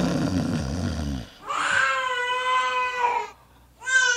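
Baby crying over a baby monitor: a short burst of noise, then a long wail, with a second wail starting near the end.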